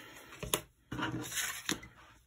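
Sheets of paper being moved and laid down on a tabletop: a soft rustle with a couple of light taps, one about half a second in and one near the end.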